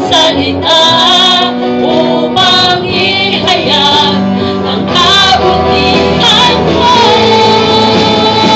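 A worship band playing live: a woman sings a Tagalog praise song into a microphone, holding and bending long notes, over electric guitar and bass guitar.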